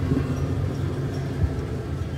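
A low steady rumble with a soft thump about one and a half seconds in.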